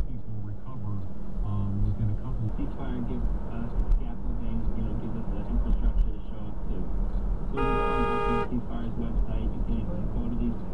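A car horn sounds once, a single steady honk just under a second long, about three-quarters of the way through: a warning as another driver fails to stop at a stop sign and yield. Road rumble inside the car's cabin runs underneath.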